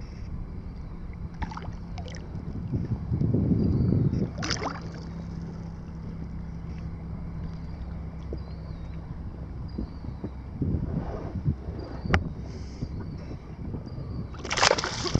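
Wind on the microphone and choppy lake water lapping against a small boat's hull, swelling louder about three seconds in, with a faint steady low hum that fades out past the middle and a couple of sharp knocks.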